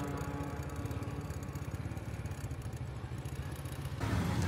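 A small engine running steadily, a low hum with a fast, even pulse.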